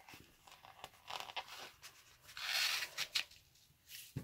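Elastic cord drawn through a punched hole in a craft-foam cover and slid over the foam, a rubbing, scraping rasp with light handling clicks. The loudest stretch of rasping comes a little past halfway and lasts under a second.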